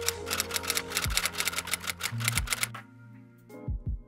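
Typewriter key-clicking sound effect, a rapid run of clicks over soft background music with held tones. The clicks stop a little before three seconds in, and a few more come near the end.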